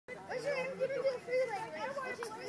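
Children's high-pitched voices calling out and chattering.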